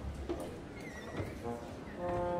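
Soft, scattered orchestral instrument notes, with a short high note that slides in pitch about a second in.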